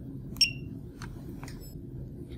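A single short electronic beep from the Horner XL Series controller's touchscreen as its OK button is pressed to confirm loading the clone, followed by two faint clicks.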